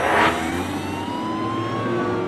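A police siren wailing in slow rising and falling glides over a car engine running, heard from inside a pursuing police car. A short, loud rush of noise comes about a quarter-second in.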